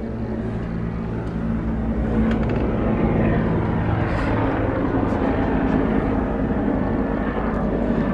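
A steady engine drone heard outdoors, growing a little louder over the first few seconds and then holding steady.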